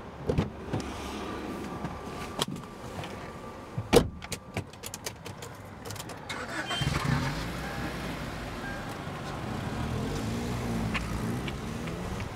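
A person getting into a car: scattered knocks, then a car door shutting with a thud about four seconds in, followed by a quick run of clicks like keys and controls. A little past halfway the car engine starts and keeps running with a low, steady rumble.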